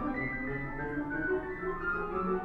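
Solo piano playing, with several notes held and overlapping as new ones enter every few tenths of a second.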